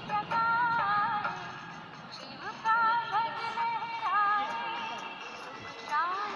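A song sung by a woman's voice, holding long notes with a slight waver, with short breaks between phrases.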